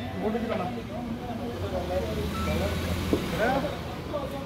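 People talking, over a low steady hum, with one sharp tap a little after three seconds in.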